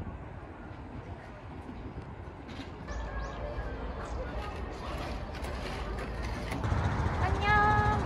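Steady outdoor background noise with a low rumble. About seven seconds in, a woman's high, drawn-out voice begins.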